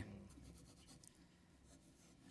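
Near silence: faint room tone with a few soft, light rustling sounds, after a brief spoken "um" at the very start.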